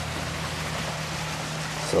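Electric aquarium air pump running with a steady low hum, under a steady hiss of air bubbling through air stones in a bucket of tap water. The water is being aerated to drive off its chlorine.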